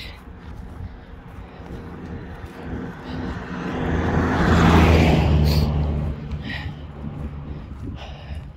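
A ute (pickup truck) driving past on a sealed road: engine and tyre noise that builds to a peak about four to five seconds in, then fades away.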